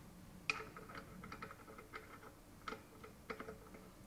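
Faint, scattered metal clicks and taps as small parts of a Fristam centrifugal pump are handled: the impeller nut is picked up off the table and started onto the shaft at the impeller. The sharpest click comes about half a second in, with a few lighter ones after.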